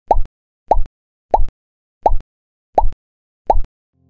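An added 'pop' sound effect, a short bubbly blip, repeated six times about 0.7 s apart with dead silence between. It marks each item popping into the picture.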